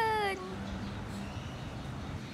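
A kitten gives one short meow that falls in pitch right at the start, while its ear is being swabbed. After that there is only a faint, steady low background.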